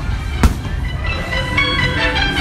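Fireworks-show music with held notes, and a single firework bang about half a second in.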